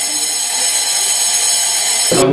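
A steady, high-pitched electronic buzzing tone.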